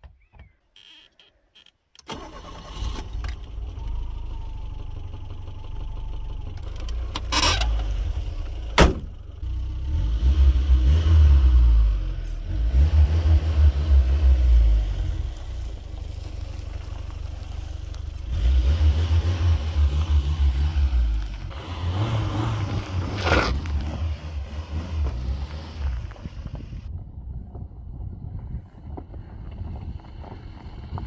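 1990 Lada Samara (VAZ-2108) engine starting about two seconds in and running, with two sharp knocks a few seconds later. The engine then swells in several louder surges as the car pulls away.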